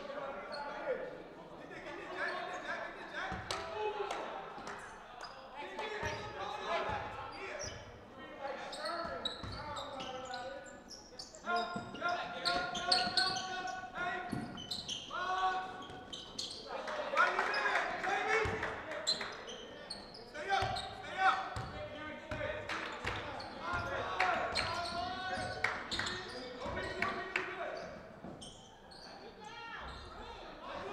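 Basketball being bounced on a gym floor during play, with voices of players and spectators calling out in the echoing gym.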